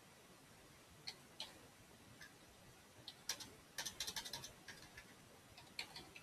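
Faint clicking of computer keys: scattered single clicks, then a quick run of key presses about four seconds in.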